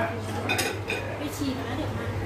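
Dishes and cutlery clinking in a kitchen, a few sharp clinks over a steady low hum.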